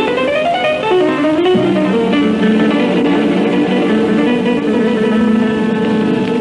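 Guitar-led 1960s pop music from a radio broadcast. A quick rising run of notes in the first second and a half gives way to steady held chords.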